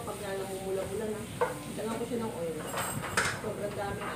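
Wooden spatula stirring shrimp in a frying pan, scraping against the pan over a light sizzle. There is a sharp knock about one and a half seconds in and a louder scrape near the end.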